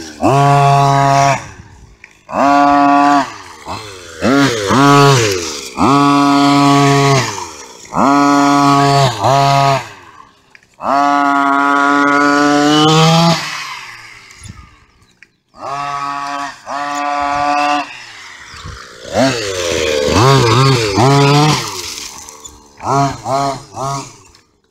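Modified 30.5cc two-stroke gasoline engine of an HPI Baja 5B RC car, revved in about a dozen short full-throttle bursts as it is driven. Each burst climbs quickly to a steady high note, holds for about a second, then drops off. The longest lasts about two seconds, near the middle.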